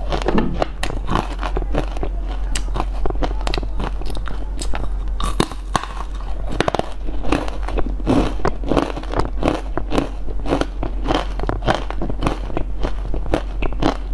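Crunching and chewing of a crisp edible spoon, a dense run of crackling bites and chews.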